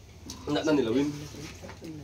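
A person's voice: a short utterance about half a second in, then quieter background murmur.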